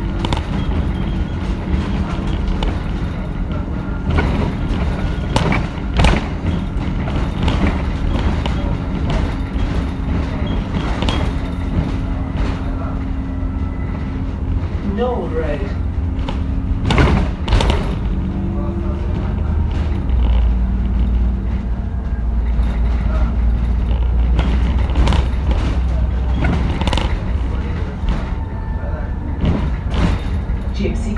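Alexander Dennis Enviro 400 double-decker bus heard from inside the cabin on the move: its diesel engine running with a steady hum and a deep rumble that grows stronger about two-thirds of the way through, over repeated rattles and knocks from the bodywork, two of them louder.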